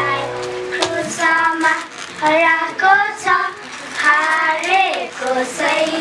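Recorded music with held notes ends within the first second, then a group of children sing into a microphone.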